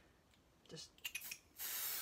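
Aerosol can of spray basting adhesive spraying with a steady hiss, starting about a second and a half in after a few light clicks.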